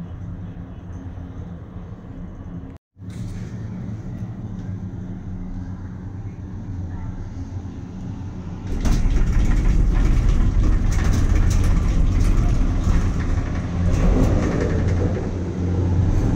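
Steady low hum inside a moving cable car gondola, with a brief cut-out about three seconds in. About nine seconds in it turns suddenly louder into a heavy rumble with repeated clattering as the gondola runs into the terminal station's drive machinery and slows on the station rollers.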